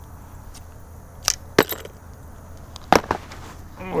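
Scattered sharp clicks and taps of fishing tackle being handled, three louder ones about a second apart among fainter ticks, over a low steady background hiss.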